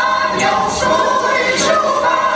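Mixed choir of men's and women's voices singing a Polish folk song, several voices in harmony.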